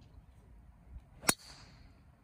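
Golf driver striking a ball off the tee: a single sharp crack about a second in, followed by a brief high-pitched ring from the clubhead.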